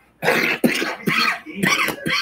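A woman coughing about four times in quick succession, harsh and close to the microphone.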